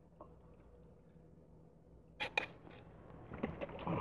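Water poured from a plastic bottle trickles faintly into a glass jar. About two seconds in come two sharp clicks, then a scraping rattle near the end as the jar's metal screw lid is fitted.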